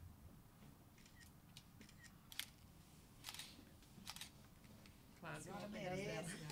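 Quiet room with a handful of faint, scattered camera shutter clicks as photos are taken. Voices start talking near the end.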